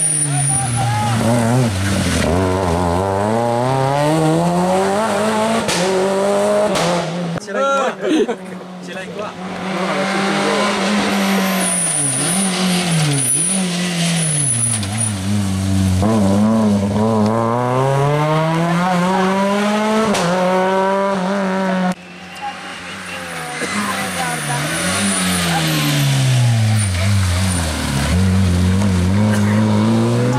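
Small rally hatchbacks' engines revving hard through the gears. The pitch climbs on each burst of throttle and drops sharply as the car brakes and shifts down, several times over. About two-thirds of the way through, the sound cuts to a second car doing the same.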